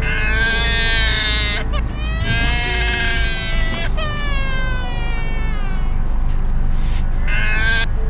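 A phone alarm playing a recording of a baby crying: long high cries, each a second or two, broken by short pauses.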